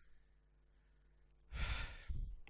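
Faint steady room hum, then about a second and a half in a man's short, loud exhale (a sigh-like breath) picked up by his headset microphone.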